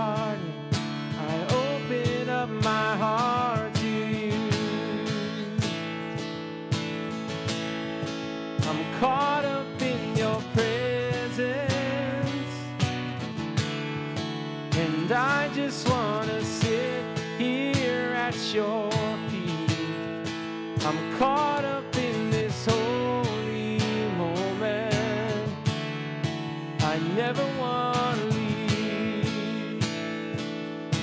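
Acoustic guitar strummed with a steady cajon beat, under a man's voice carrying the melody of a slow worship song.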